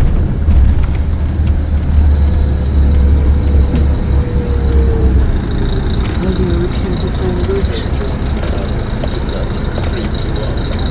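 Low, steady engine and road rumble of a coach, heard from inside the passenger cabin as it drives slowly.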